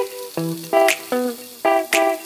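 Background music of plucked string notes in a steady rhythm.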